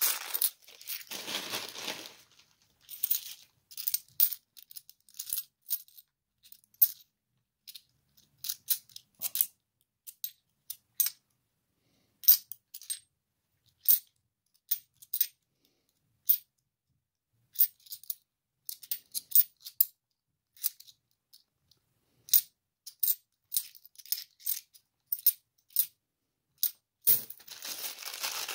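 A plastic coin bag crinkles for about two seconds at the start. Then 50p coins click against one another, in irregular sharp clinks, as a stack is thumbed through coin by coin in the hand.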